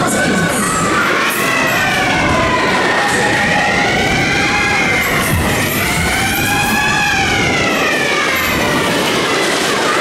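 A wailing, siren-like tone rising and falling in slow waves about every three seconds, over the steady running noise of a Cosmont Berg- und Talbahn (Disco Jet) carrying riders backwards, heard from one of its cars.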